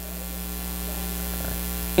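Steady electrical mains hum with hiss from the microphone and sound system, creeping slightly louder.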